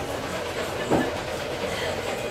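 Steady background noise of a café room, with one short knock about a second in.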